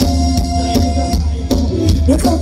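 Live band music for Thai ramwong dancing: a drum kit keeping a steady beat over a heavy bass line, with sustained keyboard-like tones above.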